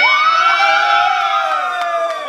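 Young people screaming and whooping in excitement, overlapping voices held as one long high shriek that rises and then slowly falls away.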